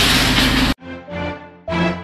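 Pressure washer spraying a wooden potato box: a loud hiss over a low machine hum that cuts off suddenly under a second in. Background music follows, with notes that ring and fade.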